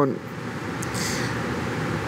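Steady, even background noise with no clear pitch, with a faint click a little under a second in.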